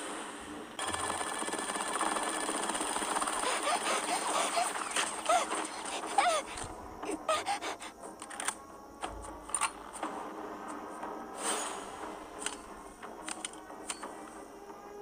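Anime battle sound effects: a dense stretch of short sliding pitched sounds for about the first six seconds, then scattered sharp hits and clicks.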